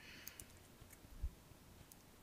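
Near silence: room tone, with a few faint clicks just after the start and one soft low thump a little past the first second.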